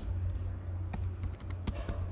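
Typing on a computer keyboard: a quick run of irregular key clicks as a word is typed.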